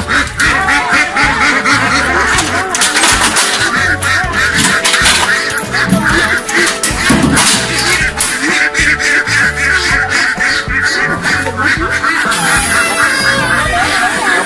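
A flock of domestic ducks quacking repeatedly, over background music with a steady beat.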